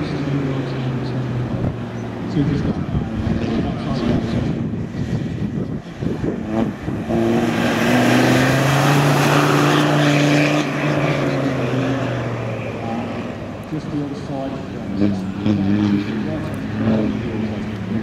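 Land Rover Defender 90's Td5 five-cylinder turbodiesel driven hard round a dirt track, its engine note rising and falling with the throttle. It grows loudest, with tyre noise on the loose dirt, as it passes close about seven seconds in, then fades as it drives away.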